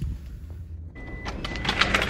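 Office copier-printer running. A steady high whine with a rattling, clattering feed noise comes in about halfway through, over a low rumble.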